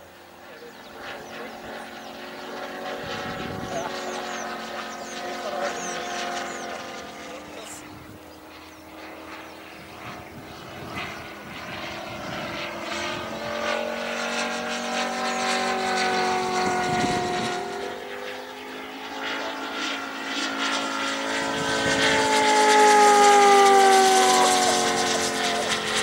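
Large-scale P-47 Razorback RC model's 250cc Moki five-cylinder radial engine driving a four-bladed propeller in flight. The engine note swells and fades as the plane moves about the sky, and is loudest on a close pass near the end, where its pitch falls.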